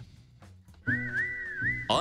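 After a brief pause, a music jingle starts about a second in: a whistled melody swooping between high notes over steady held lower notes. This is the segment's closing jingle.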